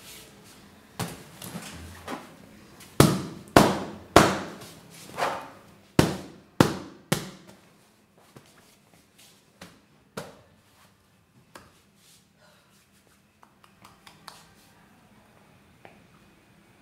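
A cushion and wicker chair being handled on a wooden stage: about a dozen sharp knocks and thumps in quick succession over the first seven seconds, then only faint scattered ticks.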